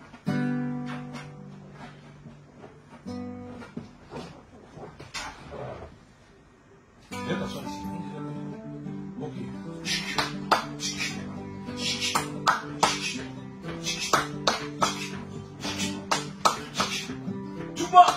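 Acoustic guitar strummed: a chord left to ring near the start and another about three seconds in, then from about seven seconds a steady, repeating strummed accompaniment. Sharp claps keep time with it from about ten seconds.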